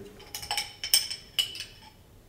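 Long metal spoon clinking against the inside of a glass maraschino cherry jar while a cherry is fished out: about seven light, ringing clinks spread over a second and a half.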